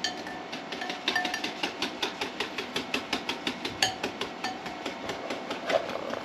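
Wire whisk stirring a liquid cleaner mixture in a ceramic bowl, its wires clicking against the bowl in quick, even strokes, several a second.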